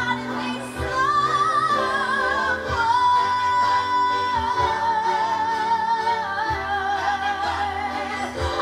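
A woman singing a long, drawn-out vocal line with vibrato, backed by a string orchestra. About three seconds in she holds one high note steady for a second and a half, then lets it waver and slowly sink in pitch.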